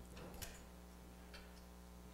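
Near silence: room tone with a low steady hum and a couple of faint ticks.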